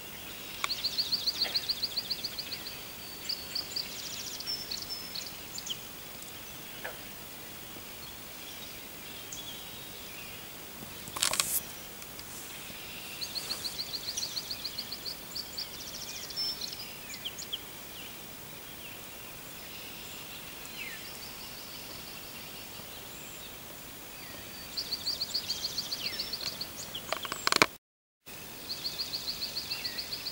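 A small songbird repeats a fast, even trill of about a second and a half, three times, with softer bird calls between, over a steady outdoor hiss. A brief noise burst comes about a third of the way through, and a short crackle and dropout come near the end.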